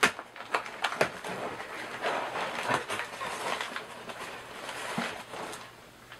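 Paper slips and the fabric of a shoulder bag rustling as a hand rummages inside it, with several sharp clicks and knocks, the loudest right at the start.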